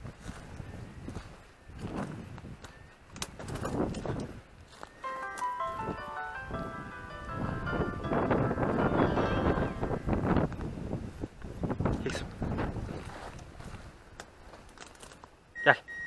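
Footsteps and rustling as someone pushes through dry scrub, with a bell jingling for a couple of seconds in the middle. A short shout comes at the very end.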